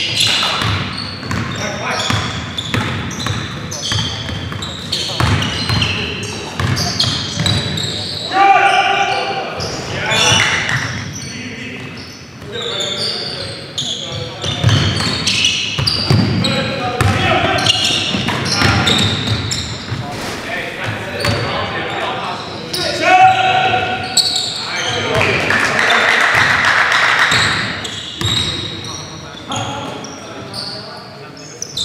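Live basketball play on a hardwood gym court: a basketball dribbling and bouncing on the floor, with short knocks and players shouting now and then.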